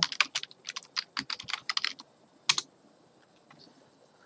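Typing on a computer keyboard: a quick run of keystrokes for about two seconds, then one louder click about two and a half seconds in.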